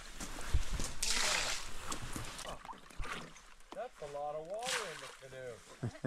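Rainwater bailed out of a canoe with a scoop and flung onto the lake, splashing twice: about a second in and again near five seconds.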